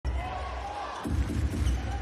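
Basketball being dribbled on a hardwood court, with arena crowd noise around it.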